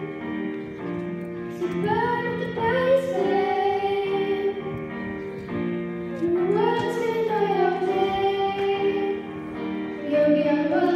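Young girls singing a pop song with electric keyboard accompaniment, held keyboard chords under sung phrases that swoop up in pitch about two seconds in and again around seven seconds.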